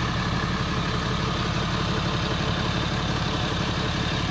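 A vehicle engine idling steadily, a low even rumble with no change in speed.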